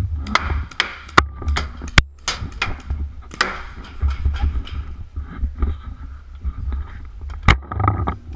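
Irregular sharp cracks of paintball fire, a quick run of them in the first few seconds and a single loud one about 7.5 seconds in, over a steady low rumble.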